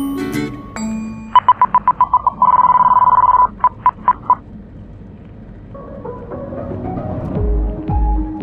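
Background music with chime-like notes, broken from about a second in by a single high electronic warning tone that beeps rapidly, holds steady for about a second, then beeps a few more times and stops; it fits a light aircraft's stall/angle-of-attack warning sounding as the taildragger settles onto its tailwheel after touchdown. Music with low throbbing notes builds again near the end.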